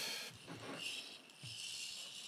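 Faint, short high-pitched whirs from a small hobby servo tilting an FPV camera to compensate as the gimbal rig is tilted by hand, with a few soft knocks from handling the rig.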